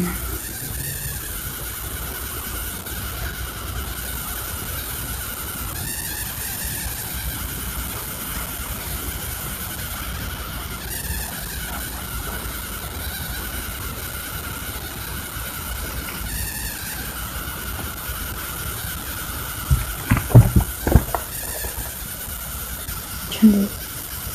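Steady background hiss and hum from the recording, with a cluster of several sharp knocks and bumps near the end as a hardcover notebook is handled.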